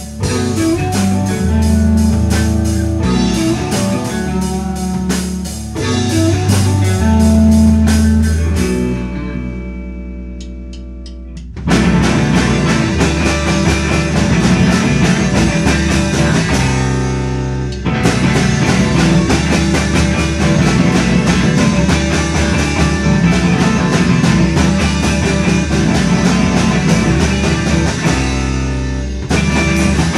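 Rock song played by a band on guitar and drum kit. About a third of the way in, the drums drop out for a couple of seconds, leaving held guitar notes, and then the full band comes back in.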